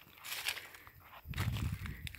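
Faint footsteps on a dry dirt path littered with dead leaves and twigs, a few scattered steps with a low rumble in the second half.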